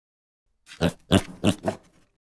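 Cartoon pig oinking sound effect: four short oinks in quick succession, starting just under a second in.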